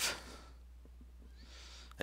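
A man's voice trails off at the very start, leaving a low steady hum of room tone, then a soft intake of breath near the end just before he speaks again.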